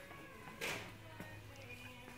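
Faint background music in the shop, with one short sharp noise about half a second in.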